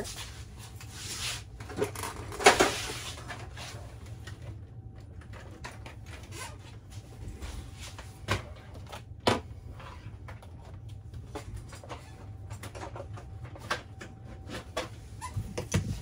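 Handling noise as a vacuum cleaner's hose and power cord are pulled out and untangled: rustling and knocking, loudest in the first few seconds, then a few scattered sharp clicks over a low steady hum.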